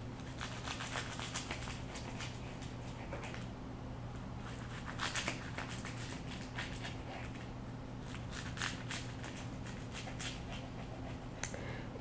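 Knife cutting through a nori-wrapped roll on a wooden cutting board: a scattered run of small crisp crackles and taps, busiest about five seconds in, over a steady low hum.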